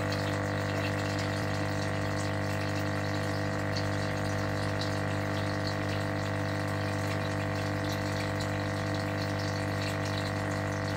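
Aquarium pump or filter running: a steady hum of several constant tones under the sound of moving water.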